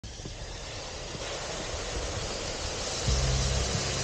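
Hot volcanic rock hissing and sizzling in a metal bucket of water, boiling it almost instantly: a steady hiss that slowly grows louder. About three seconds in, a low steady drone joins it.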